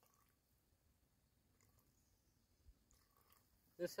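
Near silence outdoors, with a few faint small ticks and taps, about the sound of a canteen being handled.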